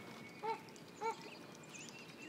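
American flamingos calling: two short honks about half a second apart, each rising and falling slightly in pitch.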